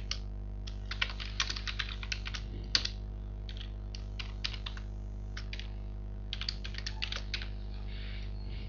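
Typing on a computer keyboard: runs of quick keystroke clicks, with a gap of about two seconds midway, over a steady low electrical hum.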